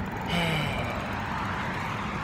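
Steady street background noise, typical of road traffic, with one short falling low tone about a third of a second in.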